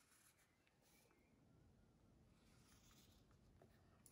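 Very faint scratching of a felt-tip marker drawing on a sheet of kitchen-roll paper, barely above near silence.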